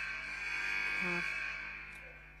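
A steady electronic buzzing drone that fades away near the end, with a woman's brief hesitant "uh" about a second in.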